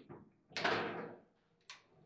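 Foosball table in play: sharp hits of the ball and the player figures against the table, the loudest about half a second in with a short ringing tail, another near the end.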